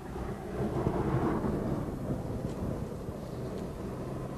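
Low, muffled rumble of a car engine running nearby, with a swell of noise about a second in.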